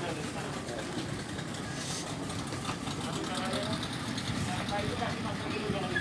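Boat engine running at idle, a steady low rumble, with indistinct voices of people nearby.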